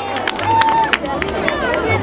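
A large crowd, many voices talking and calling out at once, with scattered sharp claps.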